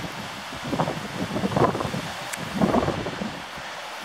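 Wind buffeting the camera microphone in uneven gusts, swelling about a second in and again near three seconds, with a single faint click between them.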